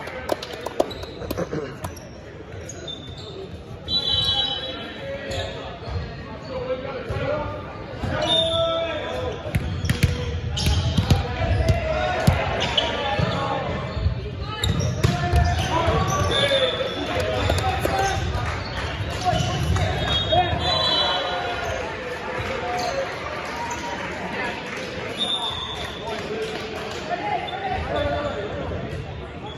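Volleyball play in a gymnasium: a volleyball bounced on the hardwood floor and struck, with repeated sharp knocks and short high squeaks of sneakers on the floor, echoing in the large hall.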